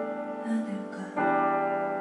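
Piano playing slow sustained chords in a quiet ballad accompaniment, one chord dying away and a new one struck about a second in.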